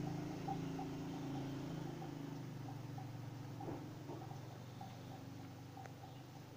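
A low, steady hum made of several pitches, slowly fading away, with faint soft ticks over it.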